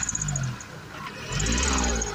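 Hyundai Eon's three-cylinder petrol engine revved in two short blips, the second rising in pitch. The engine has almost no pickup and struggles to take throttle, a fault later traced to a broken wire at the idle speed control valve.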